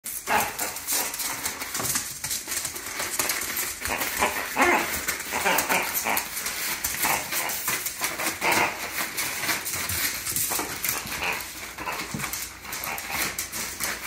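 A beagle shaking and tearing at a wrapped present, with wrapping paper rustling and crinkling throughout. A few short barks come in the middle.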